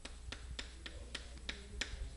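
Chalk tapping and scraping on a chalkboard as a word is written: a faint string of short, sharp clicks at irregular spacing, roughly three or four a second.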